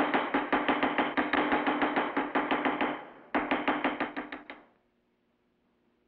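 Wooden gavel rapped hard and fast on its sound block, about six or seven strikes a second, breaking off briefly about three seconds in, then a second run that stops short a little before five seconds in.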